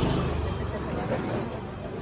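Street noise: a vehicle engine's steady low hum with people talking in the background.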